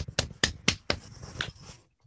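A small audience clapping, individual claps heard separately, thinning out and stopping near the end.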